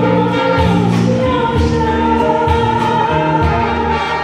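A female singer with a live band performing a Mandarin pop ballad over a steady beat, heard from the audience in a large hall.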